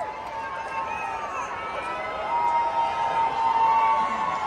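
Stadium crowd noise: many voices talking and shouting at once, growing louder in the second half, with one long held call rising above the rest.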